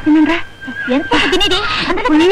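High-pitched children's voices calling out in short phrases that rise and fall, with a brief break about half a second in.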